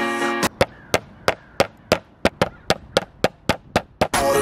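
Background music cuts off, then a nylon/rubber hammer taps a cut-out copper sheet swoosh flat. There are about fifteen sharp strikes, three to four a second.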